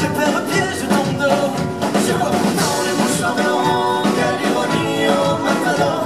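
Live music played on stage: a nylon-string acoustic guitar strummed with double bass accompaniment, and a voice singing over it.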